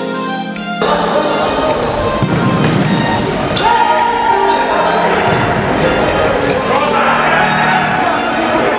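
Live sound of a futsal game in an echoing indoor hall: the ball being kicked and bouncing on the court, with players' shouts. It takes over from a music track that stops about a second in.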